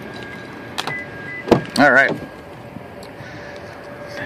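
Pickup truck door opening: the latch releases with a sharp click about a second and a half in.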